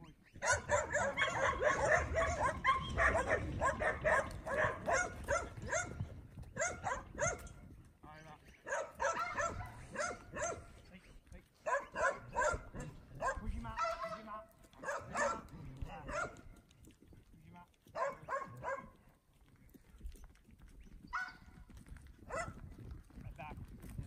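Working kelpie barking in fast runs of several barks a second. A long run starts about half a second in, and shorter bursts follow through to near the end, as the dog works stock.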